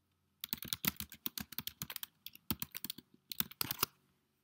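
Typing on a computer keyboard: a quick run of key clicks, with a short pause about halfway through.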